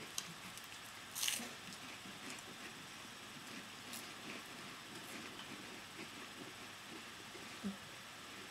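Faint chewing of mouthfuls of dry saltine crackers, with small crunching ticks throughout and a louder crunch about a second in. A brief low hum comes near the end.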